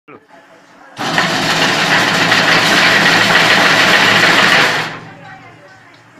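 Semi-automatic chain link fence machine running a cycle. Its motor-driven head twists wire into mesh with a loud, steady mechanical whir over a low hum. It starts abruptly about a second in and stops near five seconds.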